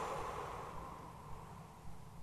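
A man's slow, soft exhale, tapering off over about a second, then faint room tone with a couple of small ticks.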